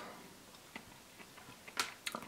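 Faint mouth sounds of chewing soft Oreo cookie pieces: a few small clicks, then a short, sharper sound near the end.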